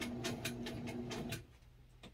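Electric hospital bed's lift motor running as the bed is lowered: a steady hum with a fast, even ticking of about eight ticks a second. It stops about a second and a half in.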